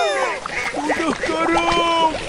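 Cartoon duck quacking in a quick series of short calls.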